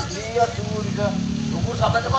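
Amplified speech of stage performers talking through microphones over a PA. A low droning tone sounds under the voices for about a second in the middle.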